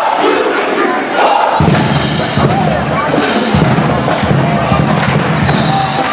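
A marching band starts playing about a second and a half in, with heavy low brass and a drum beat, over a crowd cheering and shouting.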